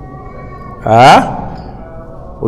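A man's voice gives one short, loud, drawn-out vocal sound about a second in, its pitch sliding up from low and falling away, between pauses in his speech.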